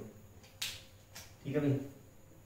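Marker on a whiteboard: two short, sharp contacts, about half a second and just over a second in, followed by a brief sound from a man's voice.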